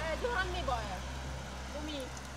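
Quiet speech over a steady low hum, with no other distinct sound.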